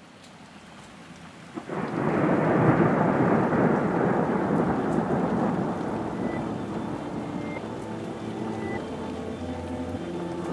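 Rain and thunder: a faint wash fades in, then swells suddenly with a crack about a second and a half in into a loud, steady rumble of rain. Soft held musical tones begin to come in during the second half.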